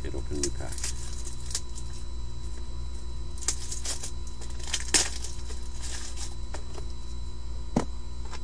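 Trading cards and plastic card holders handled on a table: scattered light clicks and rustles, the sharpest about five seconds in and another near the end, over a steady electrical hum.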